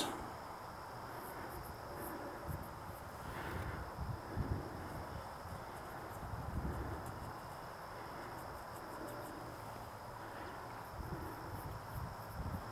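Faint, steady high-pitched insect trill, like crickets, with faint low rumbles underneath.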